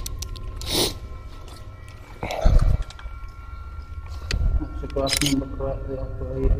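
Close handling noise of a handheld camera rig: rustles and small clicks, with one heavy knock about two and a half seconds in, over a low rumble.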